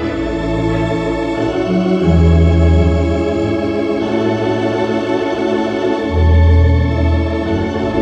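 Wurlitzer theatre pipe organ being played live: held chords over deep bass notes that change every couple of seconds, with the bass swelling louder about two seconds and six seconds in.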